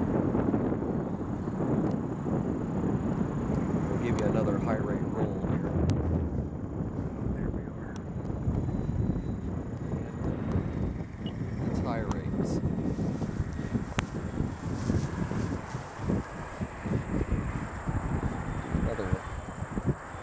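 Wind rumbling on the microphone over the distant drone of the FlightLineRC F7F-3 Tigercat's twin electric motors and propellers in flight, with voices now and then.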